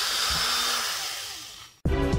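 Power drill with an M3 bit running as it bores a small terminal hole in a 3D-printed plastic battery-module frame, then winding down with falling pitch and fading. Background music with a beat cuts in abruptly near the end.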